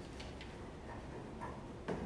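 A few light clicks and taps, with a sharper knock just before the end, over a low steady room hum.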